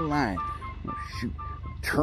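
A repeating two-note electronic chime, short steady beeps alternating between two close pitches about three times a second, with a man's voice briefly near the start and again near the end.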